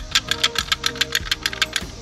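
Ratcheting tube cutter clicking rapidly and evenly, about eight clicks a second, as its blade is worked through clear braided vinyl hose.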